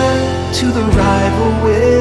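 Background music: a song with a steady beat and a melodic line.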